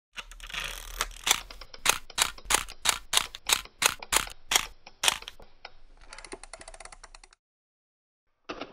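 Sharp mechanical clicks used as a sound effect, about three a second, then a fast rattle of finer clicks for about a second that cuts off suddenly.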